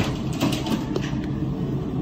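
Steady low background hum of a restaurant room, with a few faint clicks.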